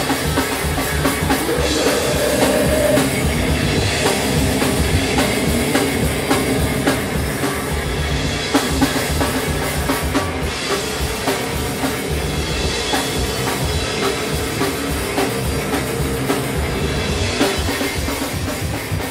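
A live rock band playing loud and fast. The drum kit dominates with rapid, dense hits on the bass drum and cymbals, over an electric bass guitar.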